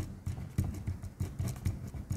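Pen writing by hand on a paper sheet: an irregular run of short strokes and taps, several a second.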